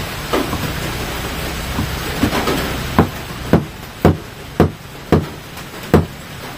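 A steady hiss, then from about halfway in a run of sharp knocks about two a second, each with a short ring: something being struck by hand on the table.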